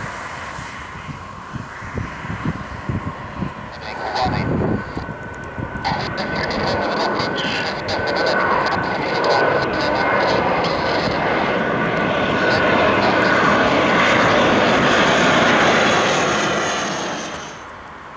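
Dassault Falcon 50 trijet's three turbofans at take-off power as it goes around after a touch-and-go. A jet roar with a steady high whine builds as the aircraft climbs past, is loudest about three-quarters of the way in, then drops away sharply near the end.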